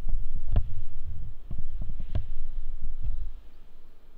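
Irregular low thumps and rumble from hands settling and handling a heavy lectionary on the ambo, carried into the microphone mounted on it; the strongest knocks come about half a second and two seconds in, and it quietens near the end.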